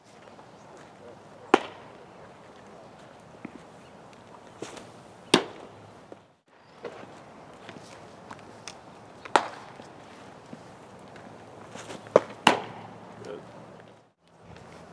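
A baseball smacking into leather gloves during a bullpen session, pitches popping into the catcher's mitt and return throws being caught. Sharp pops every three to four seconds, the last two close together near the end, with faint scuffing between.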